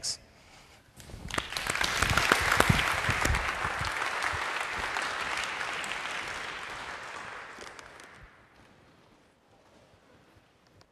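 Lecture-hall audience applauding. The clapping starts about a second in, swells quickly, then dies away over several seconds and is gone near the end.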